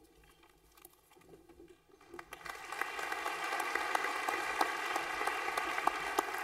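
Audience applauding. It starts about two seconds in after a quiet start, builds quickly and holds steady.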